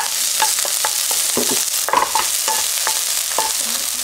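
Chopped green onion sizzling in hot cooking oil and sesame oil in a nonstick wok, with a steady hiss, while a spatula stirs it, scraping and tapping the pan irregularly.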